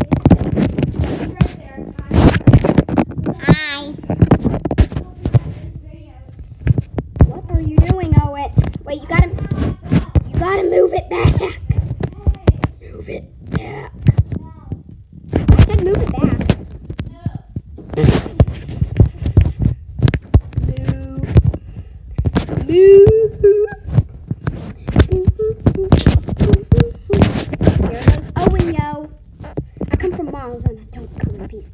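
Children's voices calling out in snatches over a busy stream of thumps and knocks from running feet, jumping and the handheld camera being jostled.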